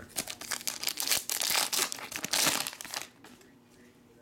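Crinkling and crackling of a foil trading-card pack wrapper being handled, lasting about three seconds and stopping abruptly.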